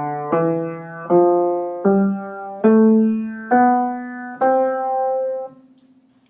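Upright piano playing the upper notes of an ascending C major scale, one struck note about every 0.8 s, each a step higher than the last. The top note is held, then cut off sharply near the end as the damper comes down on the string.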